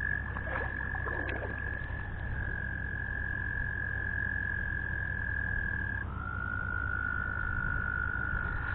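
American toads trilling: one long, steady, high trill that drops slightly in pitch about two seconds in, then near six seconds gives way to another trill that starts lower and slowly rises.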